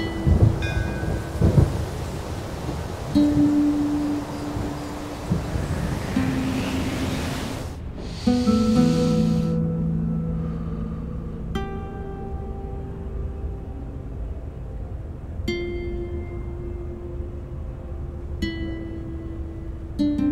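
Rain falling with low rolls of thunder for the first eight seconds or so, under a few held musical notes. It cuts off suddenly, and then slow, sparse plucked-string notes of a soft film score ring out one at a time.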